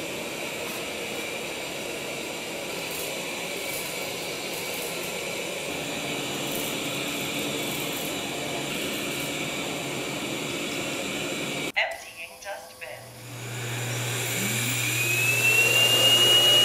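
Roborock S7 MaxV robot vacuum running on pile carpet through its suction modes, a steady whir that gets a little louder as the mode steps up toward Turbo. About twelve seconds in it cuts to the Empty Wash Fill dock's self-emptying motor, which starts with a low hum and rising whines and runs much louder than the robot.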